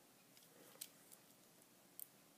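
Near silence, with a few faint clicks from the plastic gears and parts of a Lego Technic limited slip differential as its axles are twisted by hand.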